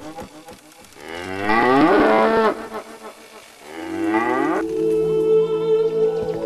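Cattle mooing twice, each call rising in pitch and cutting off sharply, over soft background music.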